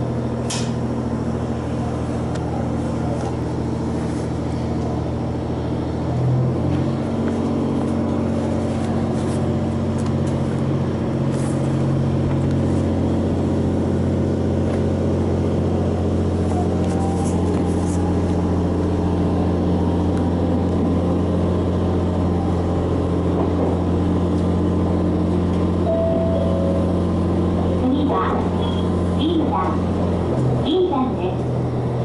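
Diesel engine of a JR Hokkaido H100 electric-drive (diesel-electric) railcar running, heard in the cabin above the powered bogie, a steady low hum of several tones. The engine note rises about six seconds in and steps up again a few seconds later, then holds steady.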